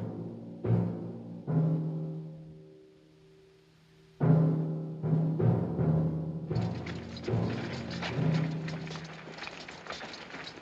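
Dramatic orchestral film score built on repeated low timpani strikes. It dies away almost to silence about three seconds in, comes back with a loud hit just after four seconds, and grows denser and busier from about six and a half seconds on.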